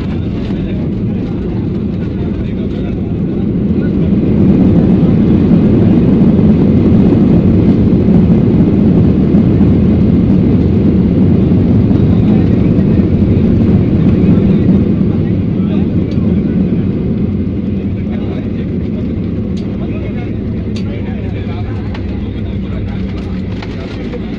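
Jet airliner's engines in reverse thrust during the landing roll, heard from inside the cabin: a low rumble that builds about four seconds in, holds for some ten seconds, then eases off as the aircraft slows.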